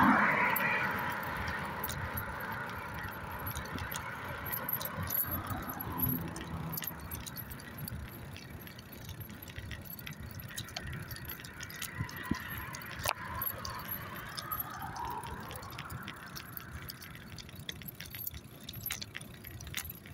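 Light metallic jingling and rattling throughout, with cars passing on the road: one loud pass right at the start that dies away over a couple of seconds, and another swelling and fading about twelve seconds in.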